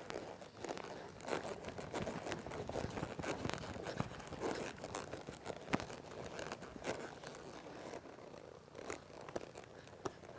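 A ridden horse's hooves on soft arena dirt at a walk and slow trot, uneven short strikes several times a second, with rustling close by.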